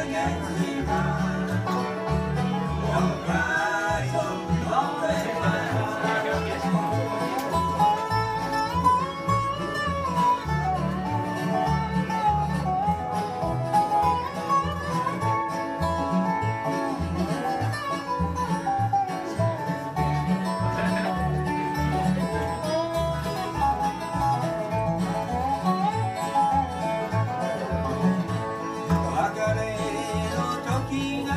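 Live bluegrass band playing an instrumental break: banjo and acoustic guitars over a steady upright bass beat, with fiddle, and no singing.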